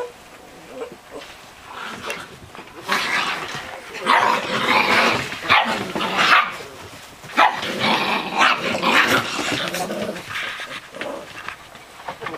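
Six-week-old Bernese Mountain Dog puppies barking and growling in play, a busy run of barks from about three seconds in until about ten seconds, quieter at the start and end.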